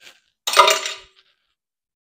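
A bread machine's metal kneading paddle clanking down: one sharp metallic clink about half a second in, ringing briefly.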